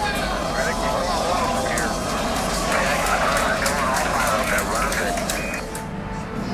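Many overlapping, indistinct voices over a steady rumbling noise.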